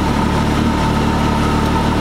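Can-Am Maverick X3's turbocharged three-cylinder engine running at a steady speed while parked, with a steady whine over the engine note.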